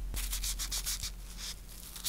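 Cotton pad rubbing over long gel nail extensions in quick, repeated wiping strokes, several a second.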